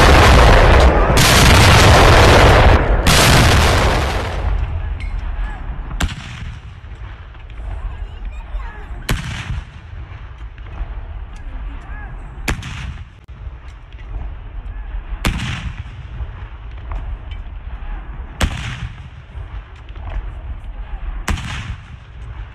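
Ceremonial gun salute from a battery of field guns, fired one round at a time. The first four seconds are very loud and distorted, recorded close to the guns; after that, six distant shots come about three seconds apart, each followed by a short rolling echo.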